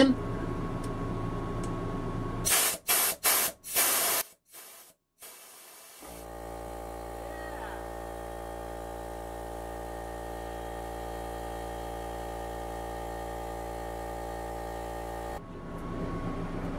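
Craftsman 1.5 HP direct-drive, oil-lubricated air compressor: several short blasts of hissing air as air is let out of the tank, then the motor cuts in about six seconds in, runs steadily and shuts off by itself near the end. The automatic cut-in and cut-out show the compressor working properly after its new gaskets.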